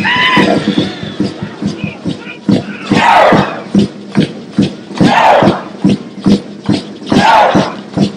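Large group of seated dancers keeping a fast, steady percussive beat of about four strikes a second, broken by loud unison shouts about every two seconds, each falling in pitch.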